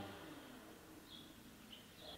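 Near silence, with two faint, short, high chirps from a small bird, about a second in and again near the end.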